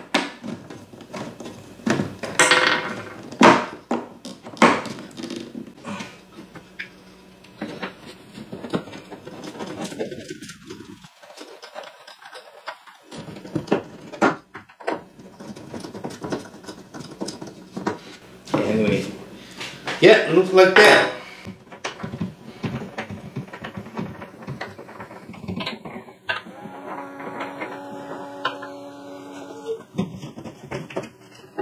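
Plastic parts and small screws of a leg massage machine frame being handled and screwed together by hand: scattered light clicks and knocks throughout.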